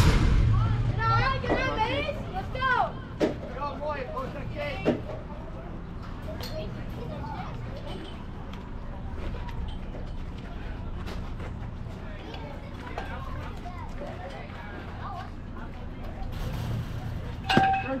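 Voices of players and spectators calling out across a youth baseball field, high and lively for the first few seconds, then settling into faint background chatter. A single sharp knock comes near the end.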